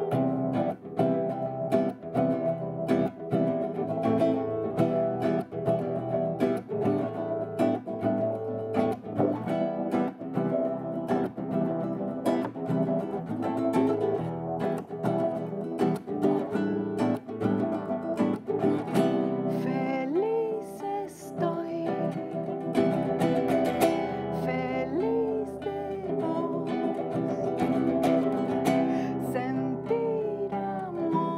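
A woman singing to her own strummed acoustic guitar, played live as an acoustic version of her song, with regular strum strokes under a held, gliding vocal melody.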